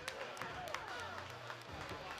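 Several thuds of feet landing on plyo boxes and the floor during fast rebounding box jumps, over crowd voices and background music.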